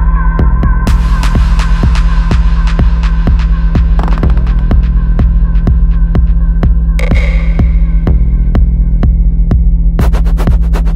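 Techno track: a fat, driving, throbbing bassline under a steady kick-drum beat, with sharp hi-hats entering about a second in and a bright synth stab about seven seconds in.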